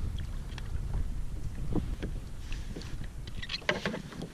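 Wind rumbling on the microphone, with scattered light knocks and ticks, a few of them bunched together near the end.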